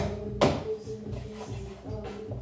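Two sharp knocks of a knife striking a cutting board while a raw chicken is cut apart, one at the very start and a louder one about half a second in, over steady background music.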